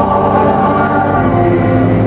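Church choir singing during Mass, holding long sustained notes.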